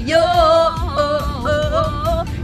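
A woman singing a long held note that bends and wavers in pitch, breaking briefly near the middle before carrying on, with the low rumble of a moving car's cabin underneath.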